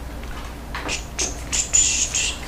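Light rustling and a few sharp clicks from cardstock and small craft supplies being handled in a desk caddy. They start about a second in and come closer together near the end.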